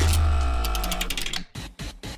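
Transition sting between news items: a deep bass hit with ringing tones that fade over about a second, then a fast run of ticks and a few clicks near the end.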